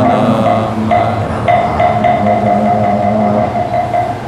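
Korean Buddhist liturgical chanting: voices intoning a verse in long, steady held notes, one syllable after another.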